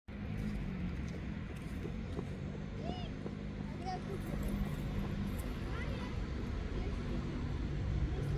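Steady low rumble of distant city traffic, with faint snatches of voices now and then.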